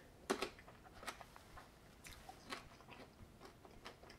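A man chewing a kumquat: faint chewing with a few short crunchy clicks, the loudest about a quarter second in.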